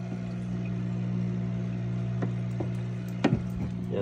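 Turtle-tank filter running: a steady hum with water splashing from the filter outlet into the tank. A few light knocks, the loudest about three seconds in.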